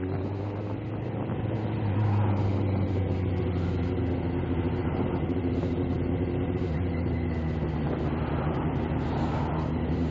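Motorbike engine running at a fairly steady pitch while riding along, with road noise underneath; the pitch lifts slightly about two seconds in.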